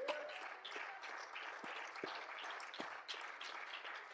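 Faint congregation noise: a low hiss of room sound with a few scattered handclaps.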